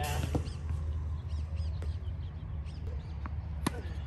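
Tennis ball being struck and bouncing on a hard court: a few sharp knocks, the loudest near the end. Birds chirp faintly over a steady low rumble.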